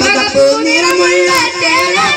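Two boys singing a Malayalam Nabidina (Prophet's birthday) devotional song into microphones, the melody wavering and bending through held notes.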